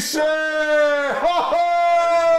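A man's voice shouting two long, drawn-out syllables, each held about a second with a slowly falling pitch.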